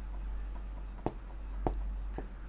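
Stylus writing on an interactive smart board: steady scratching strokes, with two sharp taps of the pen tip on the screen about a second in and again a little later.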